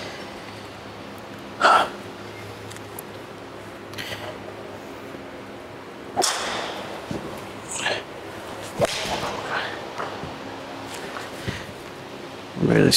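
A golf iron striking a ball off a hitting mat, a solid strike. It comes among a few other short, sharp knocks over a steady low hum.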